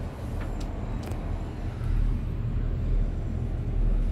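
Low, steady rumble of a moving vehicle heard from on board, with two faint clicks in the first second.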